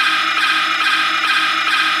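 A loud, steady electronic drone of many held tones with a faint regular pulse. It starts and stops abruptly with the slow-motion target footage and cuts off at the very end.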